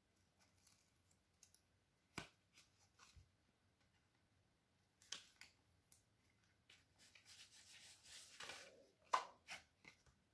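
Faint paper and tape handling: soft rustles and a few light ticks as the liners are peeled off double-sided tear-and-tape strips and a watercolor-paper card panel is handled. A longer rustle runs from about seven to nine seconds in, ending in the loudest tick.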